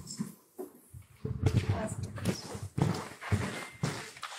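Indistinct, muffled voices in irregular bursts, picked up off the microphone.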